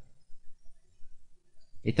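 A pause in male narration with only faint low background noise, then the man's voice starts again near the end.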